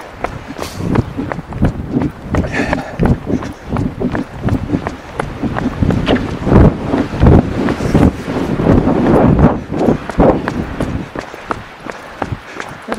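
Running footsteps: a quick, uneven run of thuds close to a recorder carried by a runner.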